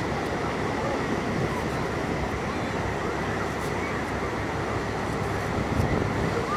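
Steady outdoor wash of wind on the microphone and surf, with no distinct scraping stand out.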